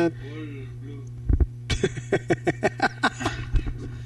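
A man laughing in a quick run of short bursts, after a single low thump, over a steady low electrical hum.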